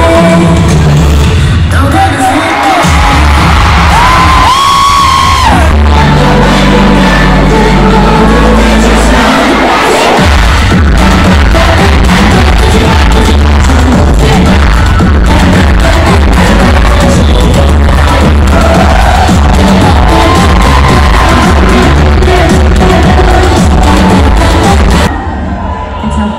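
A K-pop girl group's song played loud over a concert hall PA: women singing over a heavy bass beat, with the crowd cheering. The music stops about a second before the end.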